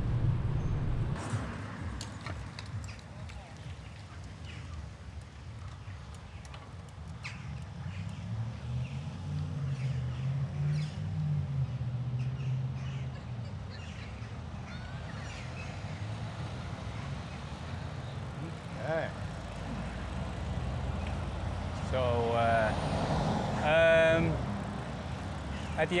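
Bicycle riding noise picked up by a bike-mounted camera: a low rumble of tyres and wind, with rattling clicks over the first several seconds while rolling on brick pavers, then steadier on a smooth asphalt bike path. Near the end come a few short pitched, wavering sounds.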